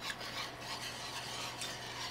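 Wire whisk stirring a thick cream-cheese and broth sauce in a cast-iron skillet: soft, repeated swishing and scraping strokes, with a steady low hum underneath.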